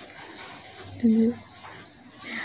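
A quiet room with one short, flat-pitched vocal sound about a second in, lasting about half a second.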